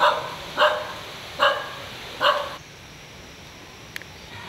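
A dog barking four times, evenly spaced about three-quarters of a second apart, each bark short and loud.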